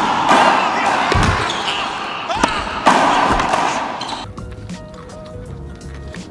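A child yanking at the handle of a locked car door from outside: two dull thuds a little over a second apart amid a loud rushing noise that stops about four seconds in, followed by soft background music.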